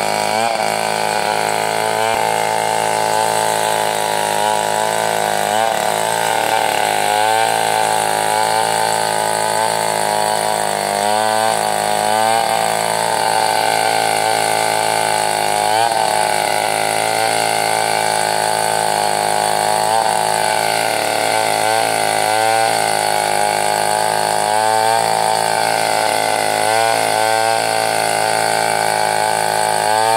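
Stihl two-stroke chainsaw running at high revs as it cuts into a large bayur log. Its engine note wavers and briefly dips every second or two as the chain takes the load in the wood.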